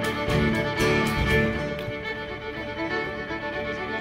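Live band music with fiddles bowing the lead over drums and acoustic guitar. The drum beats fall away in the second half, leaving the fiddle lines lighter and a little quieter.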